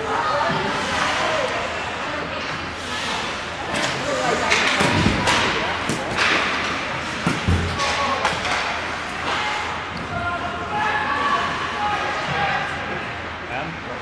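Ice hockey play in an indoor rink: spectators' voices and shouts, sharp clacks of sticks and puck, and two heavy thuds of players or puck hitting the boards, about five and seven and a half seconds in.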